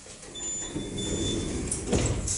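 A passenger elevator's automatic sliding doors closing: a rumble with a faint steady high whine as they travel, ending in a knock as they meet near the end.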